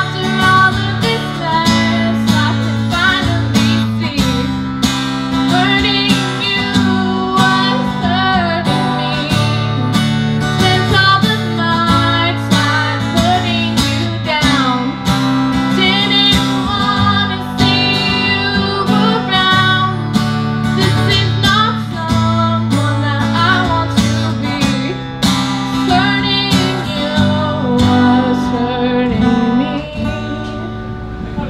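Acoustic guitar strummed steadily while a woman sings a song over it into a microphone.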